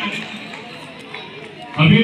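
A man speaking in Hindi, breaking off for about a second and a half and then starting again near the end. In the pause, the faint chatter of a large crowd can be heard.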